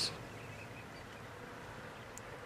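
Faint outdoor background hiss between words, with no machine running: the heat pump is switched off.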